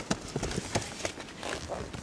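Irregular light knocks, taps and rustles of books and papers being rummaged through and handled.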